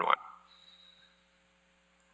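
The tail of a man's spoken word, then near silence with a faint steady electrical hum.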